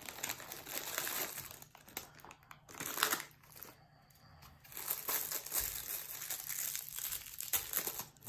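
A Lego minifigure blind-bag packet crinkling as it is handled and opened, with a short lull in the crinkling just before halfway.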